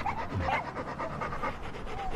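A dog panting with quick, even breaths.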